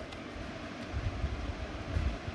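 Soapy water sloshing as a hand presses a soaked padded cloth bed down into a tub of detergent foam, with low, dull thumps from the pressing.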